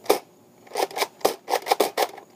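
Nerf BASR-L bolt-action dart blaster: a sharp snap as it is fired near the start, then a quick run of six or seven plastic clacks and scrapes as the bolt is worked back and forth, while one dart keeps failing to fire.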